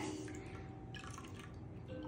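Water dripping and trickling into a wooden bowl as a large calligraphy brush is squeezed out by hand, with a few soft drips in the first second.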